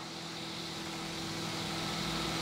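A steady low mechanical hum with a faint hiss under it, slowly growing louder.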